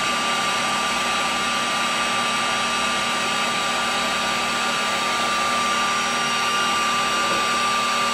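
Electric heat gun (VT1100) running steadily: its fan blowing hot air with an even rush and a constant whine, heating adhesive-lined heat shrink tubing to soften the glue.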